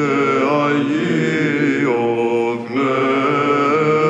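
Monks' voices singing Byzantine chant in the plagal fourth mode: a melody line that moves and bends over a steady held drone (the ison). The sound dips briefly about two and a half seconds in, then resumes.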